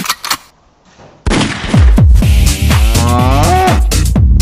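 Electronic dance track with heavy bass kicks that comes back in about a second in after a short break, with a drawn-out cow moo rising in pitch over the beat near the end.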